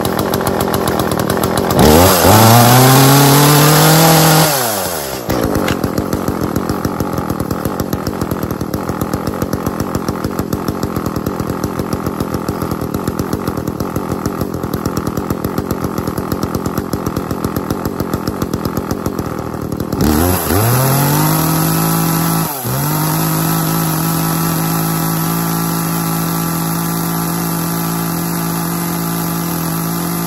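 Echo CS400 two-stroke chainsaw engine idling with a regular pulse. It is revved to full throttle about two seconds in and drops back to idle after a couple of seconds. It is revved again near twenty seconds in, stumbling briefly before holding wide open. It runs boggy on engineered fuel and falls short of its rated top RPM.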